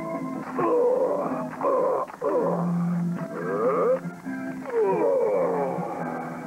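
Background music of held chords, with a voice making wailing, moaning sounds over it that slide down and up in pitch several times.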